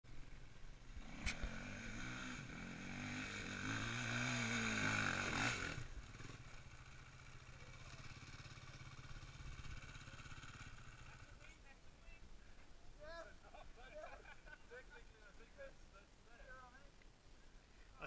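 Dirt bike engine revving under load on a steep, loose dirt climb, its pitch rising and falling, loudest about four to five seconds in and dropping off suddenly at about six seconds. It then runs lower and steady for about five more seconds, and faint voices follow.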